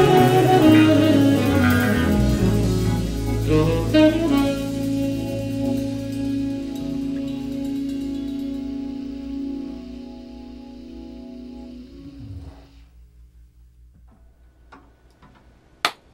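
A live band with saxophone and drum kit plays the last bars of a song. A final hit about four seconds in leaves one held chord, which fades slowly and stops about three seconds before the end.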